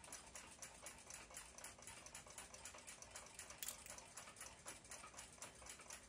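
Near silence with faint, quick, even ticking of a clock mechanism, several ticks a second, and one slightly sharper click a little past halfway.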